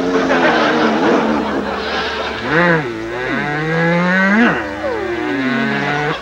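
Comic sound effects laid over kissing: a string of pitched sliding tones that rise and fall, with a long rising glide about three seconds in that peaks and then falls away near the end.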